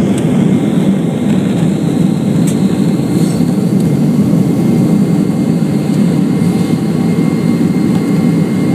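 Inside the cabin of a Boeing 767-300ER rolling down the runway: loud, steady jet engine noise with deep runway rumble, and a faint high whine above it.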